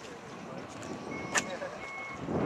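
Faint, indistinct voices murmuring, with a single sharp click a little after halfway.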